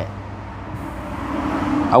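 A pause in speech filled by a steady low hum and a rushing background noise that grows louder through the pause.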